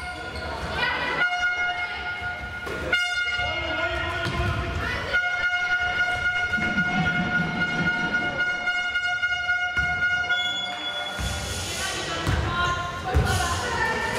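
A steady horn-like tone with a stack of overtones holds for about ten seconds, breaking off briefly a few times, then stops. Voices and a thump follow near the end.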